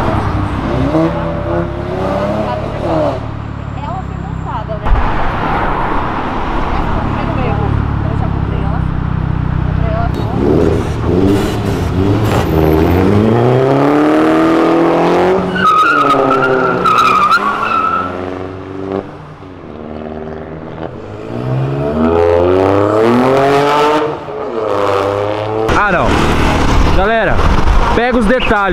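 Several cars accelerating past on a city street, their engines revving up in repeated rising sweeps as they pull through the gears. A brief high whine comes about two thirds of the way through.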